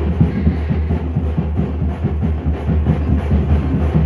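A tamate drum band playing a fast, dense beat for a street procession: many quick drum strokes over a heavy, continuous bass drum boom.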